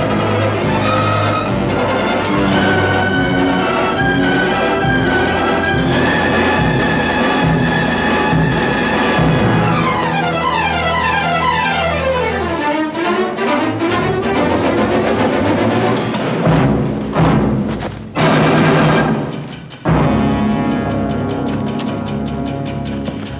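Orchestral film score with heavy timpani under held brass and string notes. About halfway through, rising and falling runs cross one another, and near the end come a few loud crashes with abrupt breaks.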